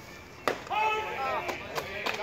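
Baseball smacking into the catcher's mitt on a called third strike, a single sharp pop about half a second in, followed at once by voices shouting.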